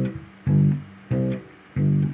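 Electric bass guitar playing a steady line of short plucked notes, about one and a half a second. Each note is stopped before the next rather than left to ring over: root-and-fifth quarter notes played tight in time.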